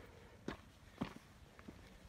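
A hiker's footsteps on a loose, rocky dirt trail, about two steps a second.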